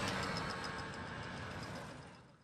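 Small motorcycle engines passing close by on a street, with the sound fading away through the two seconds.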